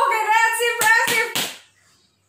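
A woman's long, high-pitched excited squeal, with a few sharp hand smacks about a second in.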